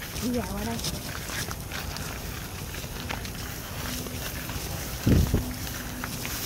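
Footsteps and rustling as people walk through grass and leafy vines, with many small crackles and swishes. A single loud low thump comes about five seconds in.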